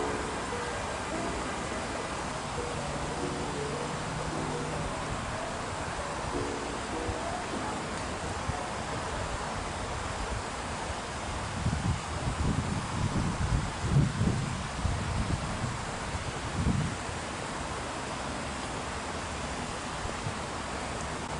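Outdoor wind noise with leaves rustling, and wind gusting against the microphone in irregular low surges from about twelve to seventeen seconds in.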